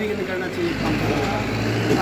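A low, steady rumble of a motor vehicle's engine running close by, with faint voices underneath.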